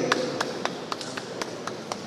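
A run of light, sharp taps, about four a second and nine in all, over a faint room hum.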